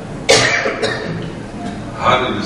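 A person coughing twice in quick succession, the first cough longer and louder, about a quarter-second in.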